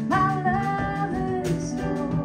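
Live acoustic band music: a woman's voice enters with a sung note that scoops up and holds for about a second, over acoustic guitar, upright double bass, piano and drum kit.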